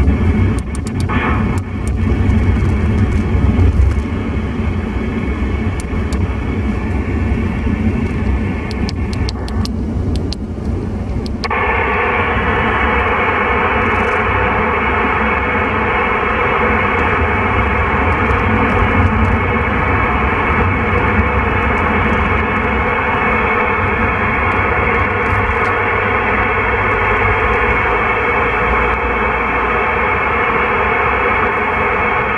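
President Lincoln II+ CB radio receiver giving out static while being tuned through the 27 MHz channels, with a run of clicks as the channels and mode are switched. About a third of the way in, the crackle gives way to a steady open-channel hiss from the FM mode, with no station getting through on the weak propagation, over the low rumble of the car on the road.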